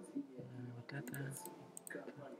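Faint, indistinct talking with scattered sharp clicks.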